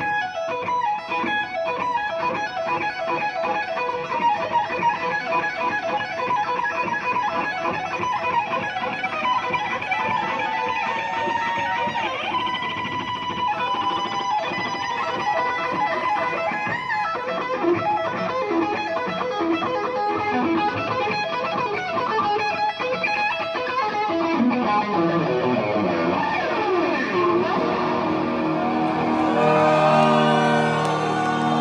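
Live electric guitar solo with loud, fast runs of notes and sliding pitches. Near the end, lower sustained notes join in.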